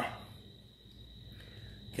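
Quiet room tone: a faint steady high-pitched whine over a low hum.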